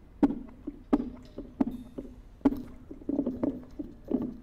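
Drum kit struck sparsely in free improvisation: single sharp hits about a second apart, each ringing briefly at a low drum pitch, then a quicker cluster of strokes near the end.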